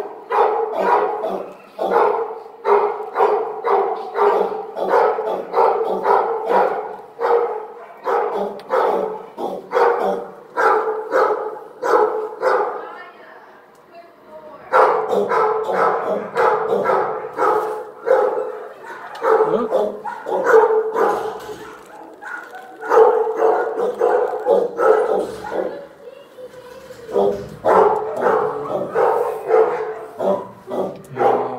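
A dog barking over and over, about three barks a second. The barking stops for a second or two about halfway through, then starts again.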